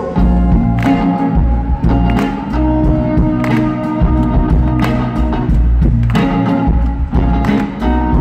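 Live band playing an instrumental passage with no vocals: acoustic guitar, double bass and violin over a steady beat.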